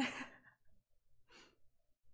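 A woman's short, breathy laugh: a sharp burst of breath out through a grin, then a second, softer breath about a second later.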